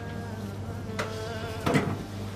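A steady low buzzing hum with faint steady tones above it, and two sharp clicks, about a second in and near the end.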